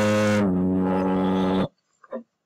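A reciter's voice holding one long, drawn-out chanted note in Quranic recitation. The pitch steps down slightly about half a second in, and the note cuts off sharply near the end.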